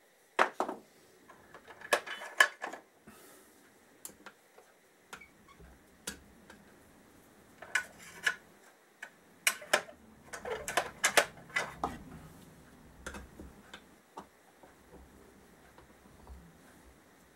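Steel tools clicking and clinking on a bridge bearing puller seated in a Kawasaki KZ650 rear wheel hub, in short clusters of sharp metallic clicks with pauses between, as the puller is worked to draw out a rusted, stuck wheel bearing.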